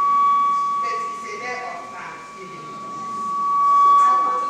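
Public-address microphone feedback: one steady whistling tone ringing through the loudspeakers, swelling near the start and again near the end, over a woman talking into a handheld microphone.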